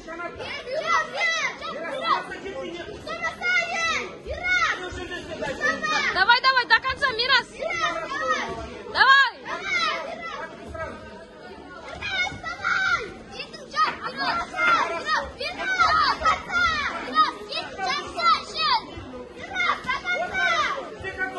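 Crowd of children at the ringside shouting and cheering, many high-pitched voices yelling over one another throughout.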